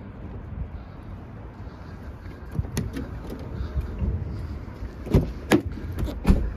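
Low wind and handling rumble, then a run of clicks and knocks as a car's rear passenger door is opened, with two sharp knocks near the end.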